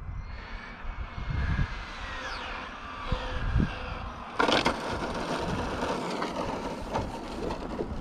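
A car passing on the road: a low rumble with a faint whine that falls in pitch as it goes by. From about four seconds in, a rougher rushing noise takes over.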